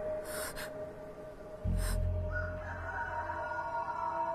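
Suspenseful drama score: steady held tones over a deep low rumble that drops out and comes back in, with two short hissing swells in the first half.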